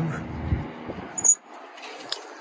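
Latches on a sheet-metal electrical control box being worked with a screwdriver and the door pulled open. There is a dull bump about half a second in, then a short, sharp metallic click with a high squeak just past a second in.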